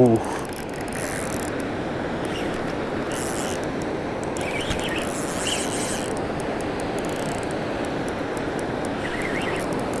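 Spinning reel ticking in irregular runs while a hooked fish is played on the line, over the steady rush of the river.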